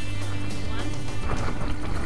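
Background music with a person's voice over it.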